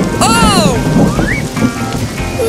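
Cartoon rain and thunderstorm sound effect: steady rain with a low rumble of thunder. Background music runs underneath, with a falling tone about a quarter second in and a short rising tone a little past the middle.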